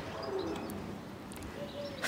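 Faint short bird calls, low in pitch, over a quiet background.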